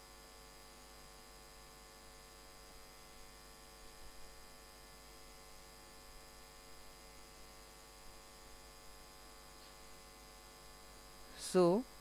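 Faint, steady electrical mains hum in the recording, with nothing else going on. A woman's voice starts talking just before the end.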